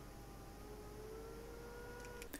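Quiet room tone between sentences: a low hiss with a faint, slightly wavering hum of a few steady tones.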